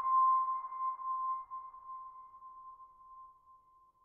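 A single high, steady electronic ping, struck just before and ringing on, fading slowly over about four seconds until it has nearly died away at the end.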